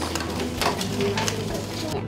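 Scissors cutting through a paper plate: a quick run of crisp snips and paper crackle.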